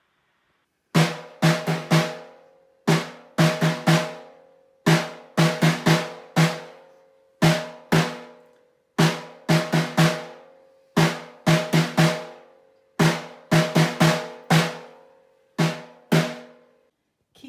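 Snare drum struck with sticks, playing the taiko pattern 'don doko don, don doko don, don doko don don, (silent su) don don' twice through. Each stroke rings on with a pitched tone, and there is a short rest before each closing pair of strokes.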